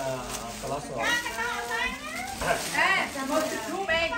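People talking: animated voices with rising and falling pitch, continuing throughout.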